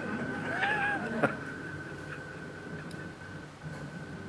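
A single short meow-like call, rising and then falling in pitch, followed by a sharp click, over a steady high-pitched whine.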